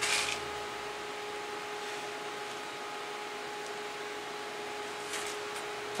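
Steady hum with a constant tone and a faint even hiss from the idling TIG welder's cooling fan, with a brief burst of hiss right at the start.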